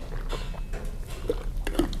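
A person drinking from a plastic shaker bottle: a few soft gulps and small wet mouth and swallowing clicks.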